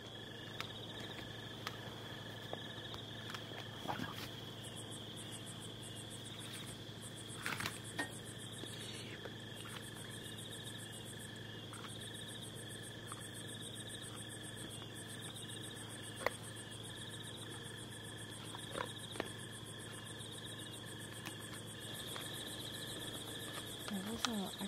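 A night chorus of crickets and other insects trilling steadily at several pitches, over a steady low hum. A few short clicks and knocks stand out now and then.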